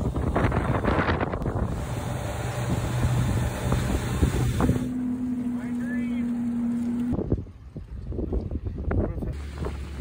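Wind rushing on the microphone over boat motor and water noise on a lake. Midway a steady hum holds for a couple of seconds and cuts off suddenly, then it goes quieter for about two seconds before the rushing returns.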